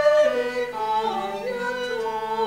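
Women's choir singing sustained notes over bowed cellos, the melody dipping and climbing in pitch about a second in.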